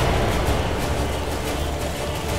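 A low, steady rumble with no speech over it.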